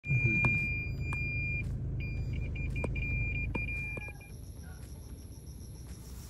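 A car's electronic warning beeper, heard inside the cabin. It sounds one steady high tone for about a second and a half, then after a short break comes back as a run of intermittent beeps that stop about four seconds in. Low engine and road rumble runs underneath, with a few sharp clicks.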